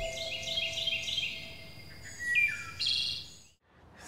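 Birds chirping and singing in quick series of short, high notes, some stepping downward, with a couple of brief sweeping calls; the sound fades out about three and a half seconds in.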